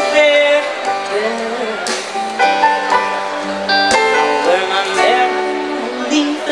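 Live band playing a bluesy song, with a guitar leading over drums and keyboard, and notes that bend in pitch.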